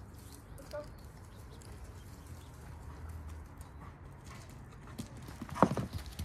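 Footsteps on a grassy yard over a steady low background hum, with a short loud knock near the end.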